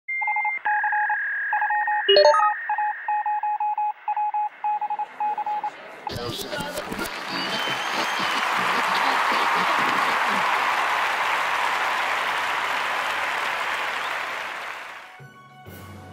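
Electronic beeping in short repeated tones, like telephone keypad tones, for about six seconds, with one quick rising chirp about two seconds in. Then a studio audience applauding steadily for about nine seconds, fading out near the end.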